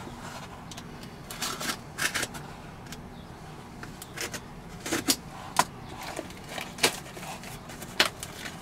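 Box cutter slicing and scraping through a cardboard package, with scattered short crinkles and scrapes as the cardboard is handled.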